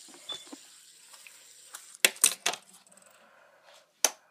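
A metal fidget spinner dropped, clattering in a quick run of sharp clicks about halfway through, with one more click near the end.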